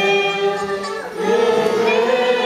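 Three young girls singing a Christian song together into microphones, holding long notes, with a short break about a second in before the next phrase begins.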